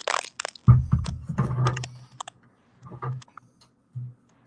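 Handling noise close to the microphone: a run of knocks, clunks and rustling as a cordless impact wrench is picked up, busiest from just under a second in to about two seconds, with a few faint knocks near the end.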